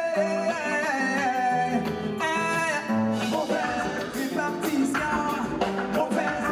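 A live band playing: a man singing over electric guitar and drums, with the singing line breaking off about halfway through while the band plays on.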